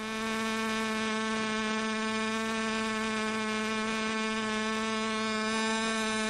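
Loudspeaker driver sounding an artificial glottal source: a steady, buzzy tone at 187 Hz rich in even overtones, with no vocal-tract model yet fitted on it to shape it into a vowel.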